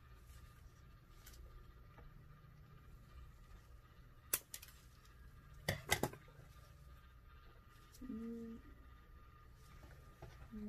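Cup turner's small motor running quietly with a faint steady whine and low hum as it rotates a wine glass. A few sharp clicks come about halfway through, and a short hummed note near the end.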